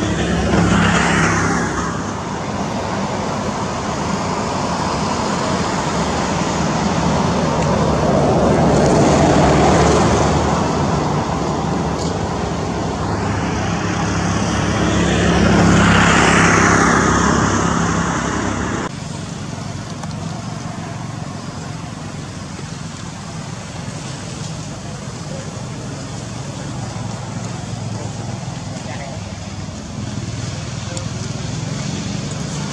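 Road traffic: vehicles passing by, the noise swelling and fading three times over the first two-thirds, then dropping suddenly to a steadier, quieter background.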